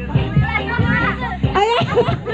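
A group of adults and children shouting and calling out excitedly, with music playing under their voices.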